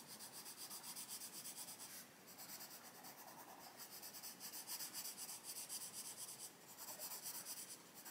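Derwent Lightfast coloured pencil shading on paper: faint, quick, repeated scratchy strokes going over an earlier layer of colour, with brief pauses about two seconds in and again near the end.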